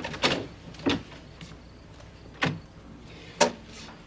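A handful of short, sharp knocks and clicks, spaced about a second apart: a door and footsteps as someone comes into the room.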